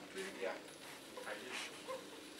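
Faint, brief voices, one short "yeah", over low room noise.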